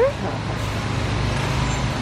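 Steady low hum and rumble of warehouse-store background noise beside refrigerated meat display cases.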